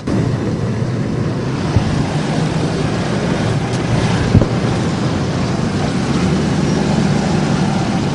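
Strong wind buffeting an outdoor microphone: a steady rush with a heavy low rumble and a couple of brief thumps, as a flag whips overhead.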